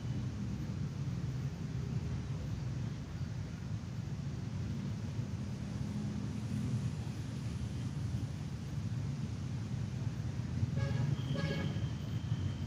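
Steady low rumble of road traffic, with a vehicle horn sounding briefly near the end.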